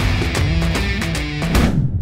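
Intro music with drums and guitar, opening on a hard hit and cutting off sharply near the end.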